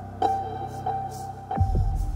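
Tense drama underscore: a low pulsing drone under a steady held high note, with a deeper bass swell coming in near the end.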